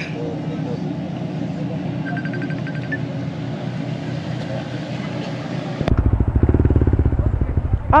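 Steady low drone of a boat's engines, then, about six seconds in, a motorcycle engine idling with a loud, fast pulsing throb.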